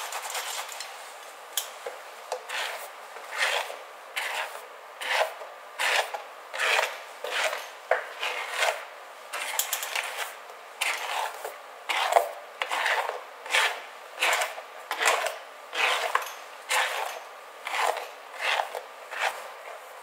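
A paddle brush drawn through wet hair in steady, rasping strokes, about three every two seconds. At the start it is a softer rubbing of a towel on wet hair.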